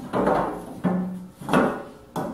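Wooden caster pivot blocks being handled and shifted on a metal tool stand, with a sharp knock or scrape about one and a half seconds in. A short hummed "uh" comes just before it.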